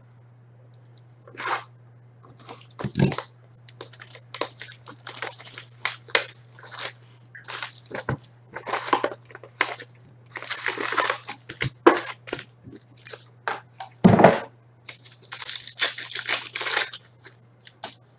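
A cardboard trading-card box being opened and its card packs torn open, in irregular bursts of crinkling and rustling of wrappers and cards with a few sharper tearing strokes, over a low steady hum.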